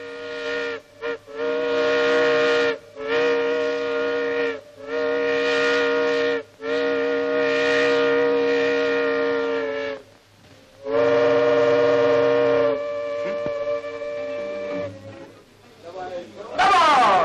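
A steam whistle with a chord of several tones, blown again and again: two short toots, then a series of long, steady blasts with brief gaps, and a last, quieter blast near the end.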